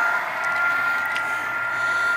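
Model train running on the layout: a steady whirring, rolling noise with a thin, steady high whine, and a couple of faint ticks.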